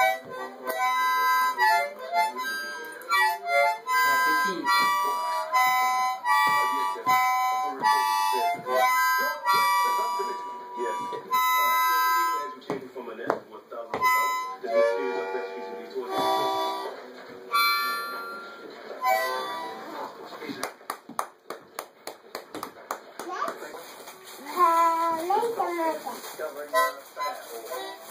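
A harmonica played by a small child: short chords and single notes blown and drawn in uneven bursts, starting and stopping. About twenty seconds in come a couple of seconds of quick taps or clicks.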